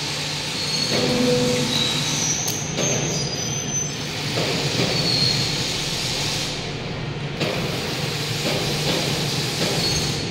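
Factory-floor machinery noise: a steady low hum under a wash of noise, with several brief high-pitched metallic squeals and a sharp click about three seconds in.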